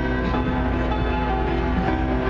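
Keyboard played in a dense cluster of many sustained, overlapping notes, a piece meant to evoke thousands of snow geese beating their wings.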